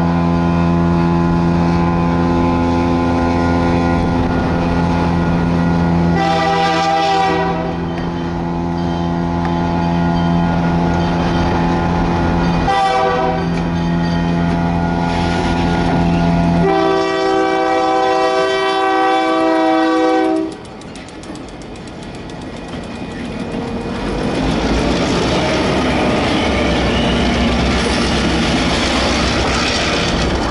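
Diesel freight locomotive's horn blowing long blasts as it approaches a grade crossing, with short breaks about 6 and 13 seconds in and a brighter final blast that cuts off about 20 seconds in. Then the locomotive's engine and the train's cars roll by close up, wheels clattering over the rail joints.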